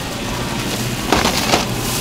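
Plastic crinkling and rustling about a second in, as a hand covered by a thin plastic bag handles plastic clamshell meat trays, over a steady low hum and background music.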